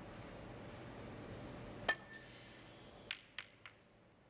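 Snooker cue ball and reds clicking: one sharp, ringing click about two seconds in, then three lighter clicks in quick succession about a second later as the shot reaches the pack.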